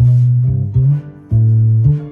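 Bass guitar played alone, picking out a line of single low notes, about five in two seconds, each ringing until the next, with a short gap a little past the middle.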